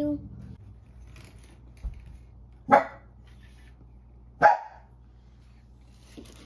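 A dog barks twice, two short loud barks nearly two seconds apart.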